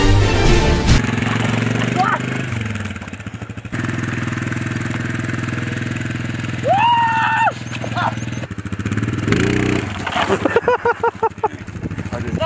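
Quad bike engine running steadily while towing a rider on a surfboard by rope across grass, dropping off briefly about two and a half seconds in. A shout rises over it about seven seconds in, and there are more shouts near the end.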